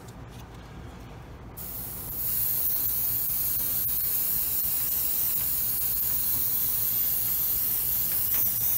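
Neo for Iwata TRN1 trigger-action airbrush spraying paint: a steady hiss of air and paint that starts about a second and a half in, swells a moment later and then holds.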